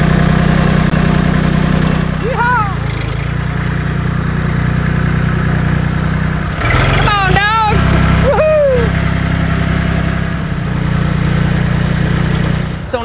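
Massey Ferguson 240 tractor engine running with a steady low rumble, dipping slightly in level now and then.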